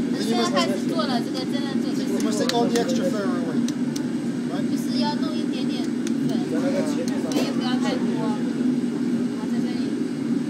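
People talking over a steady low mechanical drone, with a few light clicks.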